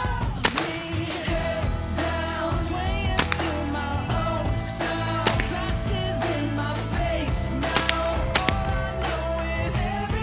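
Pop song with singing, over which five sharp shots crack out at irregular intervals from a Smith & Wesson M&P 15-22 .22 rimfire rifle.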